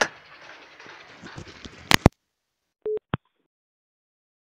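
Smartphone sounds: faint hiss, then two sharp clicks about two seconds in, followed near three seconds by one brief low beep and a last click.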